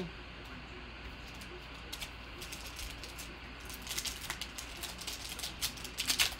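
Crinkling and tearing of a foil trading-card pack wrapper being opened by hand: a scatter of sharp crackles that starts about two seconds in and grows busier near the end.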